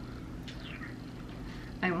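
A single short, high-pitched animal call, falling in pitch, about half a second in, over a faint steady room hum.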